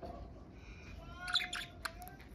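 Budgerigars chattering: a soft, wavering warble with quick chirps, rising to a louder burst of chirps past the middle and a sharp click near the end.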